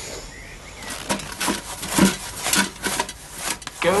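A hand rubbing an old metal watering can: a quick, irregular run of short scraping rubs, starting about a second in.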